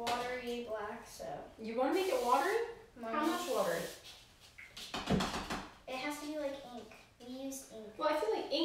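A woman and a girl talking, with a short knock about five seconds in.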